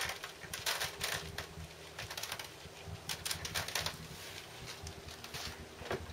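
Sugar beet seeds tipped from a small plastic bag, ticking and skittering onto a clear plastic propagator lid, with the bag crinkling. The ticks come in quick clusters and thin out after about three and a half seconds.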